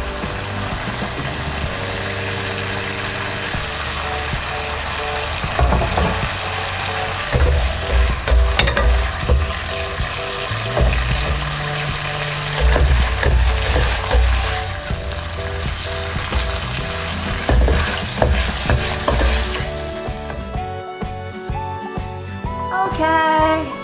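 Chicken, red chillies and holy basil sizzling in a hot nonstick pan as they are stir-fried and scooped out, with a black spatula scraping and knocking against the pan now and then. Background music plays underneath and is left on its own near the end, when the sizzling stops.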